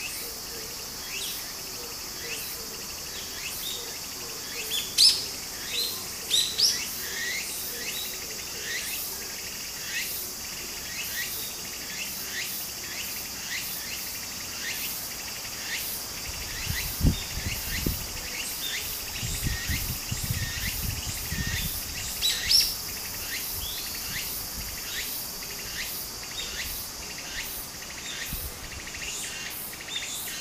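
Cicadas droning steadily in chorus, with many short rising bird chirps scattered over them, the loudest a few seconds in and again past the middle. A few seconds of low rumbling come in just past the middle.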